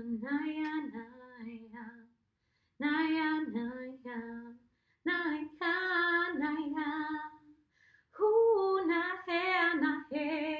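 A woman singing unaccompanied, wordless light-language syllables in a wavering, melodic line. There are four phrases with short pauses between them.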